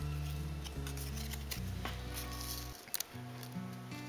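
Background music with held low notes that change about every second, dropping away near three seconds in, where a couple of short sharp clicks come, the sound of the card being picked up and handled.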